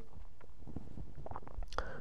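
Low steady room noise with a few faint mouth clicks, and a short breath drawn near the end.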